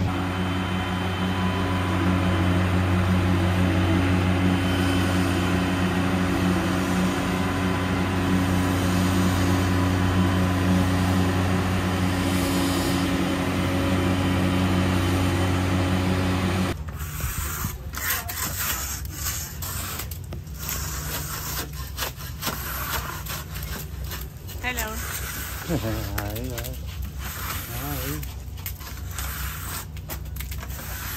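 A boatyard travel lift's engine running with a steady, loud hum as it lifts a sailboat. A little past halfway the sound changes abruptly to a hand scraper rasping barnacles and marine growth off a steel hull in irregular strokes.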